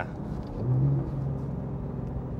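Porsche 911 Carrera T's twin-turbo flat-six running under way, heard from inside the cabin with road noise. It briefly grows louder about half a second in.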